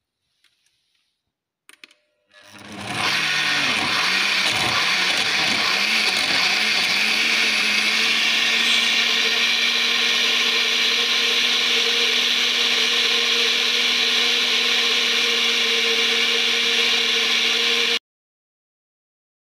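Countertop blender switched on about two seconds in, spinning up to full speed and puréeing leafy herbs, banana, lemon and water. Its pitch wavers at first as it chops the chunks, then settles into a steady whine once the mix is smooth. It cuts off at the end.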